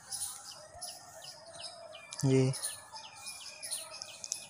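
Small birds chirping repeatedly in the background: short falling chirps, about three a second.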